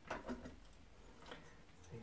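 Faint handling noises as small stick-on rubber feet are peeled off their backing and pressed onto the glass bathroom scale: a short scratchy rustle at the start and a fainter one just past a second in.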